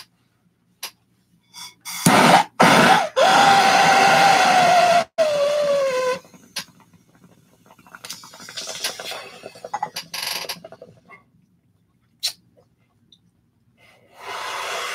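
A jet torch lighter clicks alight about two seconds in and hisses loudly and steadily for about three seconds while it is held to a bong, with a whistling tone that slides down in pitch as air is drawn through. Then comes a few seconds of quieter rattling bubbling from the water in the bong as the draw goes on, and a single click near the end.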